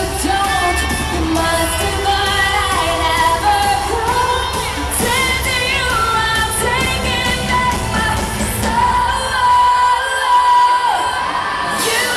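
Live pop-rock band heard from the crowd in an arena: electric guitars, bass and drums with singing. About nine seconds in, the bass and drums drop away under a long held note that slides down, then the full band comes back in.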